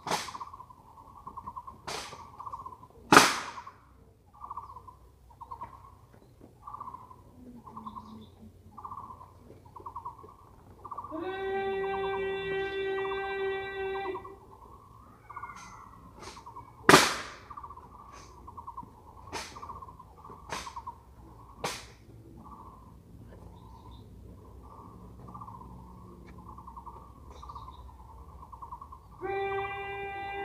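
Honour guard rifle drill: single sharp claps and knocks of rifles being handled and struck, spaced out with long pauses, the loudest about three seconds in and again past the middle. A steady horn-like tone sounds for about three seconds a third of the way in and starts again near the end.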